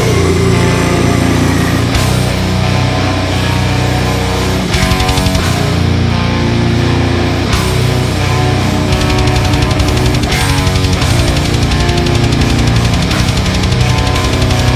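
Loud death metal band music: heavily distorted electric guitars over fast, dense drumming.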